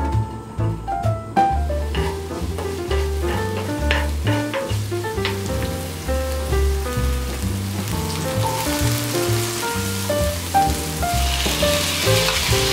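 Chopped green onions sizzling in hot oil in a pan, the frying hiss building in the second half, over background piano music.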